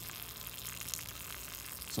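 Faint steady hiss of water trickling out of a tube siphon as it drains a plastic container.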